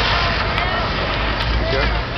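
Off-road vehicle's engine running hard as it climbs a steep dirt hill, heard as a steady, noisy sound with a strong low end.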